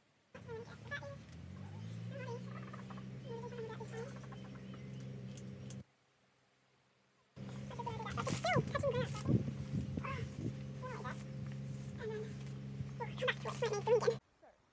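Electric horse clippers switched on and running with a steady hum, rising to speed as they start, while they are tried out to see if they work. They cut off after about six seconds, then start again a second and a half later and run until the end.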